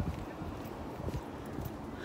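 Footsteps on a concrete bridge deck, soft knocks about two a second, over a low rumble of wind on the microphone.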